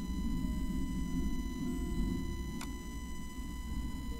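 Steady low background rumble with a faint constant high whine, broken once by a single sharp click about two and a half seconds in.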